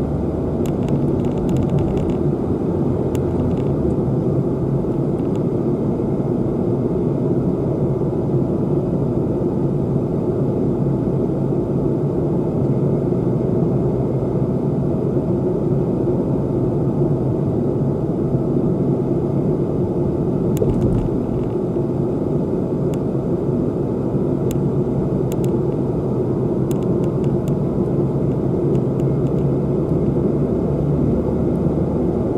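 Steady rumble of a moving car heard from inside its cabin: tyre and road noise with the engine running at an even speed.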